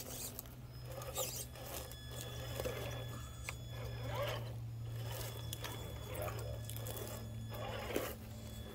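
A small RC rock crawler's electric motor and geared drivetrain whirring slowly as it climbs over rocks. A steady low hum runs throughout, with irregular scraping and rustling from the tires on rock and leaves.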